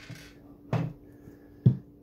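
Hard printer parts and a cardboard box being handled on a wooden tabletop: a brief rustle at the start, a knock a little before halfway, and a sharp, loud thump near the end.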